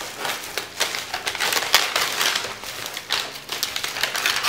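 Packaging crinkling and rustling in irregular bursts as items are handled in a gift box.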